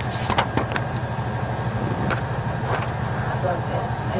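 Room noise in a meeting hall with a seated audience: low background voices and a few short knocks and clicks of people moving and handling things, over a steady low hum.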